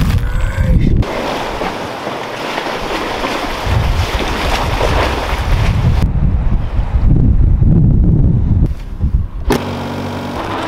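Wind rushing and buffeting on the microphone across a run of outdoor shots, heaviest as a low rumble from about six seconds in. Near the end it cuts to the steady hum of a small car's engine running.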